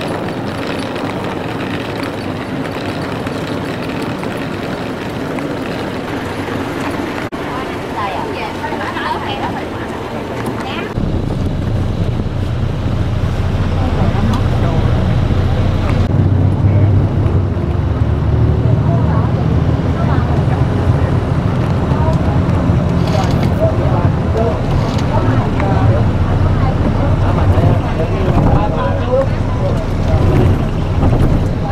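Outdoor sound with voices at first; then, about eleven seconds in, the low steady rumble of engine and road noise heard from inside a moving vehicle, with voices over it.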